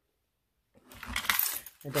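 A bunch of keys with metal keychain charms jangling and clinking as they are handled, for about a second after a moment of dead silence.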